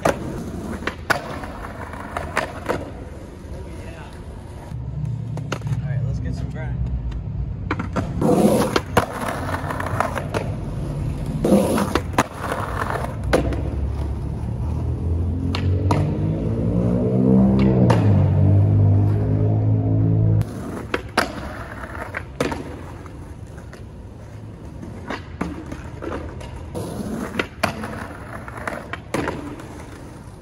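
Skateboard wheels rolling on asphalt, with repeated sharp clacks of the board and 50-50 grinds along a lacquered concrete curb. Through the middle a car's low engine sound runs under it and cuts off suddenly about twenty seconds in.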